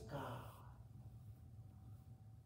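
A man's short breathy exhale in the first half-second, then quiet room tone with a low hum and a faint steady tone.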